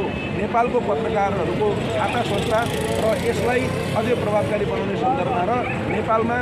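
A man speaking continuously, with a steady hum of street traffic beneath his voice.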